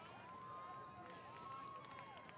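Quiet outdoor film ambience: faint distant voices under a thin, steady high tone.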